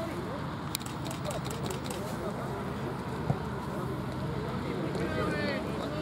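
Distant shouts and chatter of football players across an open grass pitch, over a steady low outdoor rumble, with a few faint clicks about a second in.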